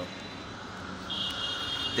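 A steady engine drone, with a steady high whine joining about a second in.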